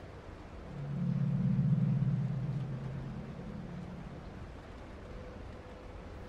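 A low droning rumble that swells up about a second in and slowly fades away, over a faint steady hum.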